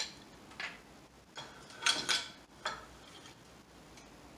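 Floor loom being worked for one pick: a boat shuttle passing through the shed amid a handful of sharp wooden clacks and knocks, the loudest a close pair about two seconds in.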